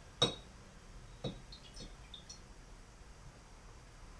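A utensil clinking against a glass jar while stirring: two sharp clinks about a second apart, then a few faint taps.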